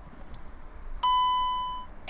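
2014 VW Crafter instrument-cluster warning chime: one beep about a second in, lasting just under a second and fading away. It is the bulb-failure warning for a blown right brake-light bulb, set off by pressing the brake pedal.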